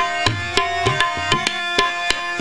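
Tabla playing a steady rhythm of about four strokes a second, the bass drum's deep strokes bending in pitch, over harmoniums holding sustained chords: an instrumental passage of kirtan with no singing.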